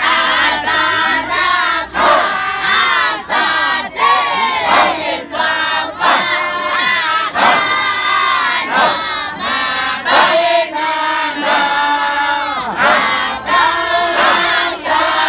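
Many boys and young men chanting loudly together in a dahira, an Islamic devotional chant, in short repeated phrases about two seconds apart.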